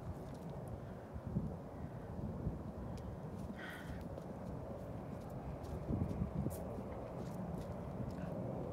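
Wild horses grazing and stepping about on snowy, frozen ground close by, with soft hoof sounds under a steady low rumble on the microphone.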